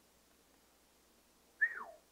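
A person whistling one short falling note near the end, sliding from high to low in under half a second, after a stretch of near silence.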